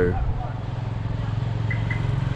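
A steady low engine hum, as of an idling motor, with two faint high chirps near the end.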